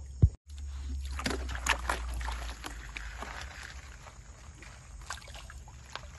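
Water sloshing and splashing in a gold pan as it is swirled and dipped in a shallow stream, in short irregular splashes over a steady low rumble. A sharp click and a brief dropout come just under half a second in.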